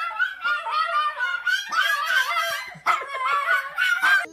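Small long-haired dog howling along in a string of wavering, drawn-out "singing" howls.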